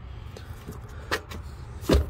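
Steady low background rumble, with a short click about a second in and a dull thump near the end.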